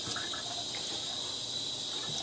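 Tap water running steadily from a sink faucet onto a plaster slab held over a stainless steel sink, wetting the plaster.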